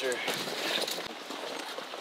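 Footsteps and the rustle of brush and dry grass as someone walks through undergrowth, with a few faint snaps and clicks.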